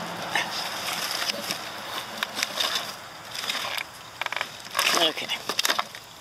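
Crackling and rustling in dry leaf litter, a run of short irregular crunches and clicks, with a spoken "okay" near the end.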